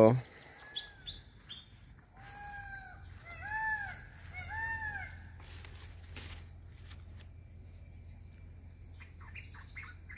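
Birds calling: a handful of short whistled notes, then about four arched, pitched calls in a row, and a few quick chirps near the end.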